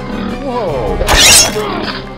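A man's cry falling in pitch, then a loud harsh burst about a second in as he is struck down with a sword, over background music.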